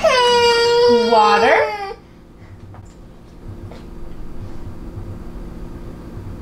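A baby's loud, high-pitched cry lasting about two seconds: it holds one pitch, then wavers and breaks just before it stops. Quieter room sound with a faint steady hum follows.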